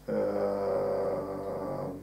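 A man's voice holding one steady, drawn-out hum or vowel for nearly two seconds, starting suddenly.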